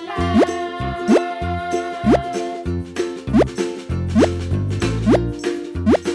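Upbeat children's background music with a steady beat, over which a cartoon 'bloop' sound effect rising quickly in pitch repeats about once a second, seven times.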